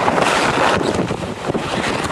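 Wind buffeting the camera microphone aboard a sailing trimaran under way: a steady, even rush of noise.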